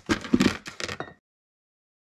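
A utensil scraping and knocking against a cooking pot as steamed broccoli is scooped into a plastic container: a quick cluster of sharp scrapes for about a second, then the sound cuts off abruptly to dead silence.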